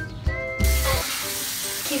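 Background music for about the first half-second, then a sudden cut to the steady hiss of a bathroom sink tap running.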